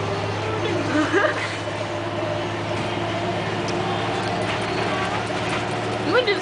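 School bus engine running with a steady low drone, heard from inside the passenger cabin while the bus drives. A voice sounds briefly about a second in.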